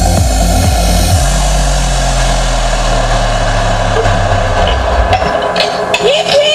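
Electronic dance music played loud over a PA. The kick-drum beat stops about a second in, leaving a held bass note under a noisy wash like a build-up, and the bass cuts out about five seconds in.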